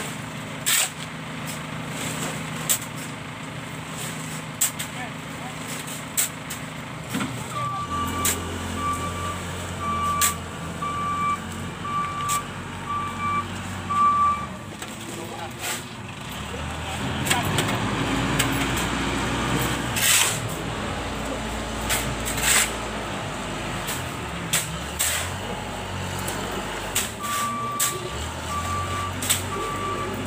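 Steel shovels scraping and knocking into a sand pile and on concrete, with wheelbarrows clattering, in irregular sharp strokes. A vehicle engine starts to rumble about a quarter of the way in, and its reversing alarm beeps steadily for several seconds, stops, and beeps again near the end.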